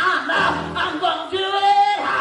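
A woman singing gospel into a microphone over a PA system, ending on one long held note.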